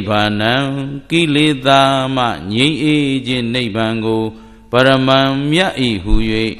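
A Buddhist monk chanting in a melodic male voice through a microphone, drawing out long sliding notes in three phrases, with a breath about a second in and another just past four seconds.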